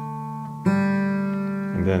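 Acoustic guitar with the third and fourth strings of a D chord plucked together, ringing out. A fresh pluck of the pair comes about two-thirds of a second in and fades slowly.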